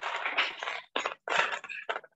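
Rustling and rattling of small loose objects being handled and rummaged through, in several short bursts, with the thin, gated sound of a video call's microphone.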